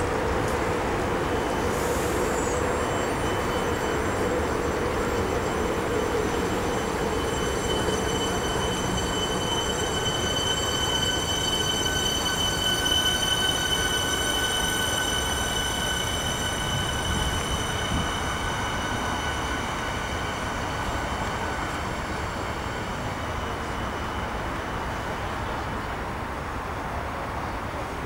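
An electric suburban train pulling out and running past, its wheels rumbling under a set of steady high whining tones. The whine dies away and the rumble fades over the last several seconds as the train leaves.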